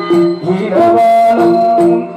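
Live Tamil folk-drama ensemble music: tabla and drum strokes with small hand cymbals keeping time under a melody line, which climbs to a high note held through the second half.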